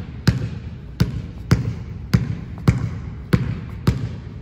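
Basketball dribbled on a hardwood gym floor: seven bounces at an even pace, a little under two a second, each echoing in the hall.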